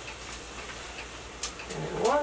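A cooking utensil clicking and scraping against a frying pan as scrambled eggs are stirred: a few light, separate clicks over a faint steady hiss.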